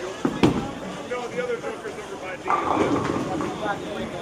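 A single sharp crash of bowling pins being struck about half a second in, then the murmur of voices across the alley.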